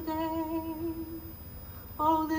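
A woman singing unaccompanied (a cappella folk singing), holding one steady note with a slight waver for just over a second before it stops. A new phrase begins right at the end.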